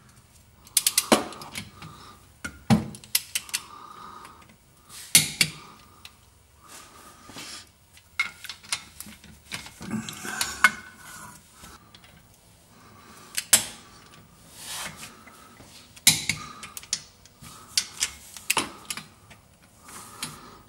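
A ratcheting torque wrench and socket tightening the rear differential cover bolts, in a cross pattern to their final torque: short bursts of ratchet clicks and metal clinks with pauses in between.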